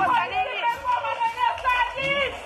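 Several people talking over one another in an agitated scuffle.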